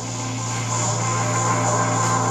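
Background music holding a steady low note.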